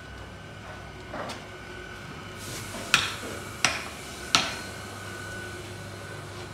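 Three sharp hammer blows on metal in quick, even succession, each ringing briefly, over a steady low background hum. A softer knock comes about a second in.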